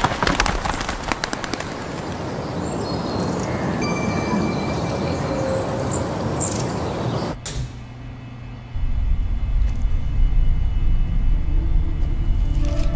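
Overlaid short-film soundtracks: dense crackling, like a burning flare throwing sparks, fades into a steady hiss with a few faint chirps. About seven seconds in it cuts off suddenly, and after a short lull a low droning music bed comes in.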